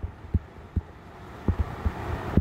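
A few soft, low, irregular taps of a stylus writing on a tablet screen, with a faint hiss near the end.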